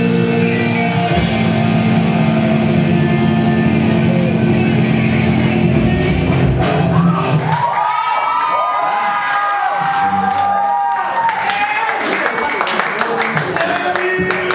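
Hardcore/metal band playing live: distorted electric guitars, bass and drums. About eight seconds in the heavy low end stops, leaving higher wavering tones, and cymbals and shouting come back near the end.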